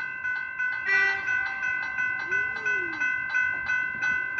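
General Signals electronic level-crossing bell ringing in rapid, even strikes, a steady electronic ding repeated over and over, signalling that the crossing is active for an approaching train.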